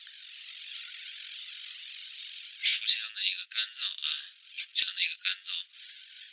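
A steady hiss for about the first two and a half seconds, then a voice talking, sounding thin and tinny with no low end.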